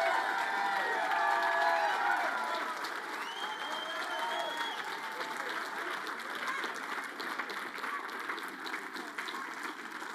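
Congregation applauding, with voices calling out over the clapping in the first few seconds; the applause then thins and fades gradually.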